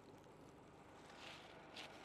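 Near silence: faint outdoor background hiss between sentences, with a couple of very faint soft sounds.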